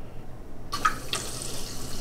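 Water jets of Botanium hydroponic planters switching on and spraying up into lava stones, a hissing splash that starts under a second in, over a low steady pump hum. The jets spray with some pressure.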